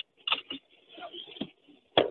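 A few faint, brief sounds from the caller's end of a telephone line, with near silence between them.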